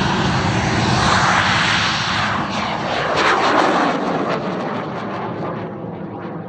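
A bang fai saen, a large Thai black-powder festival rocket, roaring in flight just after launch. The loud, steady rush of its motor slowly fades as it climbs away.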